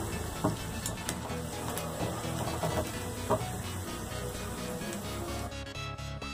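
Soft background music over the sizzle of lentil pakoras frying in hot mustard oil, with a few light clinks of a slotted spoon in the pan. The sizzle drops away near the end.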